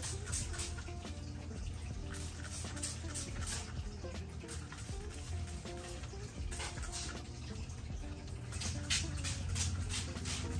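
Plastic trigger spray bottle misting plants: a series of short hissing squirts, a few in quick succession, over quiet background music.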